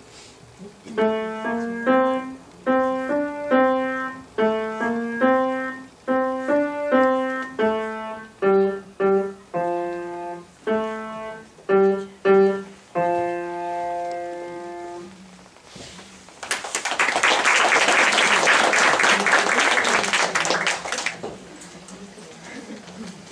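A grand piano played by a young pupil: a short piece of repeated notes and chords that ends on a held final chord about two-thirds of the way in. Then an audience applauds for about five seconds.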